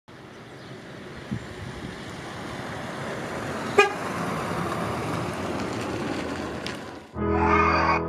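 A 1991 Ford Fiesta driving up, its running noise growing steadily louder, with one short toot of its horn about four seconds in. Music starts near the end.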